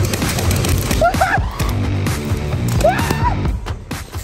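Music with a heavy, steady beat, with two short rising pitched sounds over it, about a second in and again near three seconds.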